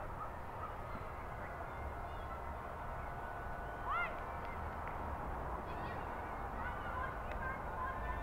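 Open-air ambience at a park cricket ground: a low, steady rumble with no talk. About halfway through comes a single short high call that rises and falls, and a few fainter short calls follow near the end.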